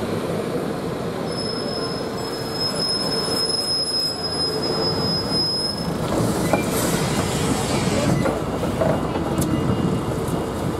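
Bus engine running as the bus pulls into the stand, with a long, steady high squeal for about four seconds. Then there is a short burst of hiss, and the engine goes on idling.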